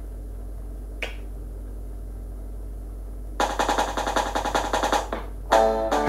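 Guitar strummed in a fast percussive rhythm for a couple of seconds as the song's intro, over a steady low electrical hum, after a single click about a second in. A short strummed chord comes just before the end.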